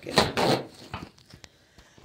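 Handling noise as a paper napkin is grabbed: two short, loud rustling scrapes in the first half second, then a few light taps.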